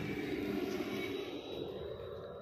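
A steady, low engine rumble, easing off slightly near the end.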